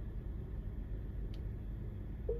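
Steady low hum inside a stationary car's cabin, with one faint click about a second and a half in.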